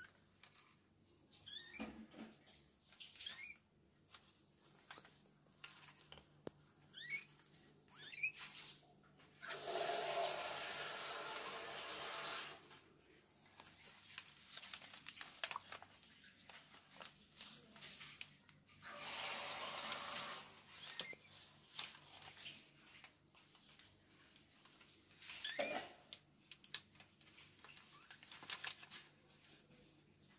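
Newborn kittens mewing faintly now and then, in short rising and falling cries, with small rustles and clicks as they squirm on cloth. Two stretches of steady rushing noise, each about three seconds long, are the loudest sounds, about ten and nineteen seconds in.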